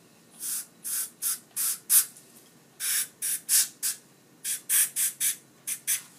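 Dental three-way air-water syringe hissing in about fifteen short spray bursts, in three quick groups, rinsing the acid etch off the tooth enamel.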